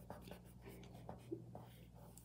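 Faint rubbing of a fingertip over graphite pencil shading on paper, a series of soft strokes blending the shading smooth.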